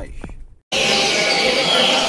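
A dense chorus of caged double-collared seedeaters (coleiros) singing at once in a hall, mixed with people talking. It comes in abruptly about two-thirds of a second in, after the last word of a man's voice dies away.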